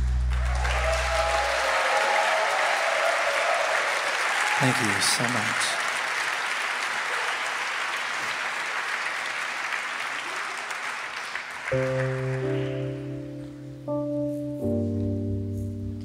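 A final low chord dies away, and audience applause and cheering carry on for about twelve seconds before fading. Then a Wurlitzer electric piano starts playing sustained chords.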